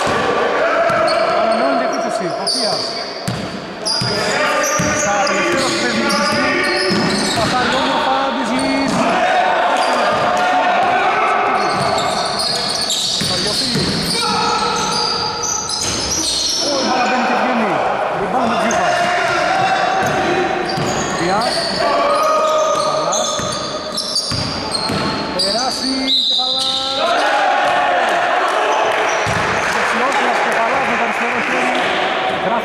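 A basketball being dribbled on a hardwood gym floor during live play, with men's voices calling out throughout.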